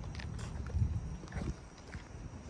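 Daimler Ferret scout car driving slowly on concrete: a low, steady engine rumble with scattered light clicks and knocks.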